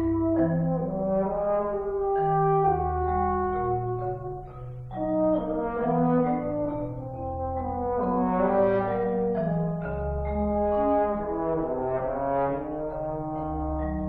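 French horn and marimba playing a fast duet, the horn's held notes over the marimba's low notes, with a brief drop in loudness about four and a half seconds in.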